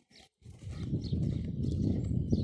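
Wind buffeting the microphone. It is a low, irregular rumble that starts about half a second in and grows louder.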